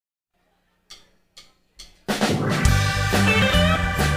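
Three sharp clicks about half a second apart, a drummer's stick count-in, then a live blues band comes in together at full volume with drum kit, bass and electric guitars.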